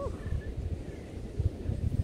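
Wind buffeting the microphone, an uneven low rumble that rises and falls in gusts, with a brief vocal sound at the very start.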